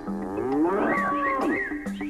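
A long cow moo, sliding down and back up in pitch, laid as a sound effect into the show's theme music, with held musical notes underneath.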